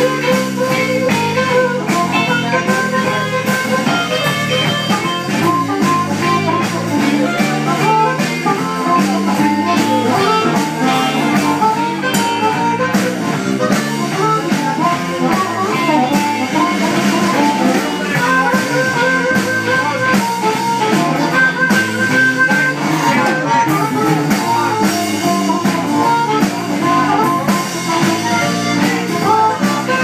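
Live blues band playing an instrumental break: an amplified harmonica, cupped against a vocal microphone, plays long held notes over strummed acoustic guitar, electric bass and drums.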